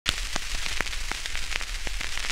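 Surface noise of a 1930 shellac 78 rpm record in the lead-in groove: steady hiss and low rumble with about half a dozen irregular crackling clicks, before the music starts.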